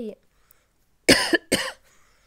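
A woman coughs twice in quick succession, about a second in.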